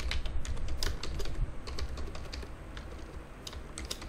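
Typing on a computer keyboard: a quick, irregular run of keystroke clicks entering a password, over a low steady hum.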